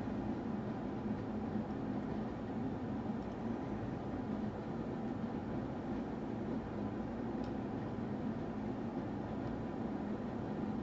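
Steady low hum and hiss of room noise with no distinct events.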